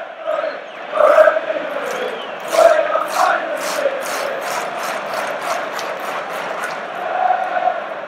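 A stadium crowd of Chelsea away fans chanting in unison, the sung line swelling louder several times. A few seconds in, a run of sharp claps at about four a second sounds along with the chant for a couple of seconds.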